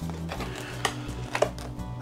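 Quiet background music with a few light clicks from a plastic clamshell package as it is picked up and handled.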